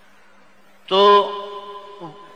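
A man's voice speaking a single drawn-out word, 'to', about a second in, its tones lingering in an echo afterwards; a faint steady hum underneath before it.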